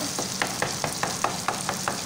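Wooden spatula stirring brain masala in a frying pan, knocking and scraping against the pan several times a second, over the steady sizzle of the curry frying in oil and ghee.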